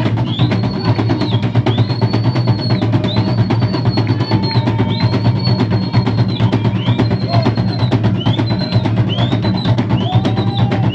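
Steady, fast drumming for a Zulu dance. Over it, a high note rises, holds briefly and falls again, repeating roughly once a second.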